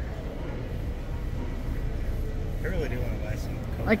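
Warehouse store background noise: a steady low rumble, with faint distant voices about three seconds in.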